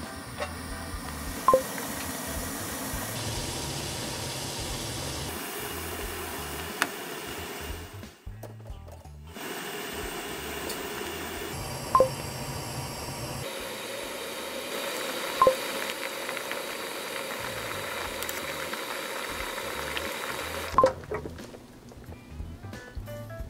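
Background music over water heating and boiling in a stainless steel pot. Four short, sharp pops sound at intervals.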